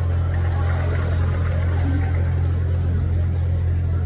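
A steady low hum with a faint, even background noise and no speech.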